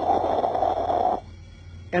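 A burst of fire sound, a rushing noise of flames lasting just over a second and then cutting off sharply.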